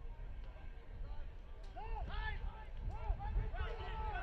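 Short shouted calls from players on a soccer pitch, starting about two seconds in and coming several times, over a steady low rumble of open-air field noise.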